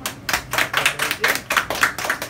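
A small audience applauding: a quick, uneven run of separate hand claps.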